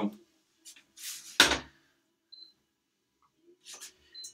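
A steel saucepan of water set down on a hob with one sharp clunk about a second and a half in, followed by a few faint handling clicks and a short high beep.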